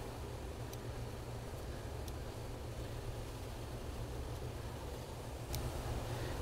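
Steady low hum and hiss of grow-room ventilation, with a few faint clicks from the plants being handled.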